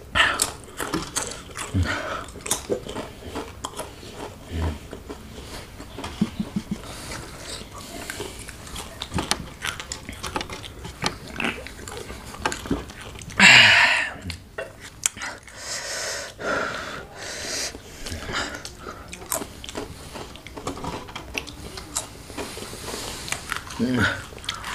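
Close-up crunching and chewing of crisp, thin ghost-pepper chips, many short crackly bites scattered through. About thirteen seconds in there is a short, loud, breathy burst, with softer breathy sounds just after it.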